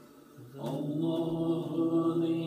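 Played-back recording of a chanted, droning voice holding long sustained notes. It dips briefly at the start, and a new held note comes in sharply about half a second in.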